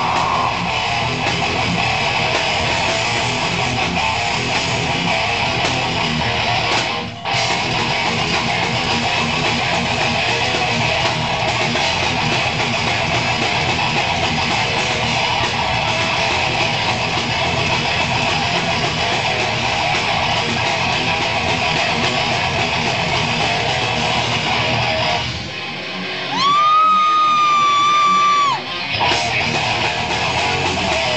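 Live band playing loud electric-guitar music, with a brief break about seven seconds in. Near the end the band drops out and a single high guitar tone is held for about two seconds before the full band comes back in.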